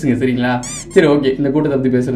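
A man talking in Tamil, broken about two-thirds of a second in by a short, high-pitched squeak that rises and falls.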